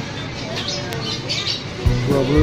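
Shop ambience with background voices and short, high chirping calls. Background music with a deep, steady beat comes in near the end.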